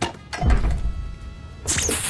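Film soundtrack: a heavy, deep thud about half a second in over steady orchestral music, then a sharp noisy hit near the end.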